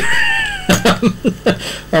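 A man laughing: a long high-pitched note that slides slowly down, then a run of short laughs.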